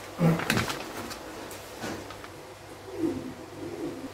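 A dove cooing in the background, in low rising and falling calls near the start and again about three seconds in. Plastic rustling and a few sharp clicks in the first second as meatballs and fried tofu are tipped from a plastic bag into a pot of water.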